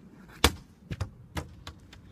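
A thrown stone landing with one sharp crack, then knocking four more times, more lightly, as it bounces and comes to rest. It was thrown at a plastic Coke bottle, which it leaves unbroken.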